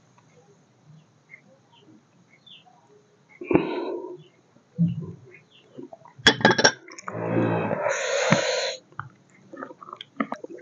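A man eating makes loud throat and breath noises. Sharp mouth clicks come about six seconds in, followed by a harsh breath of about two seconds that starts low and rasping and ends in a hiss. Earlier there is a single knock and a few faint clicks.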